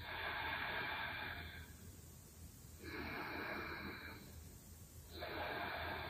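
Slow, audible breathing of a person holding a yoga pose: three breaths, each about a second and a half long, a little under three seconds apart.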